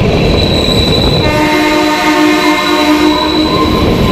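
Kalka–Shimla narrow-gauge toy train's horn sounding one long, steady blast starting about a second in, over the running noise of the coaches rolling on the track, with a thin high squeal under it.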